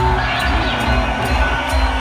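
Loud live electronic music with a steady driving beat, heavy kick-drum thumps and regular sharp cymbal hits through a concert PA, recorded from within the crowd.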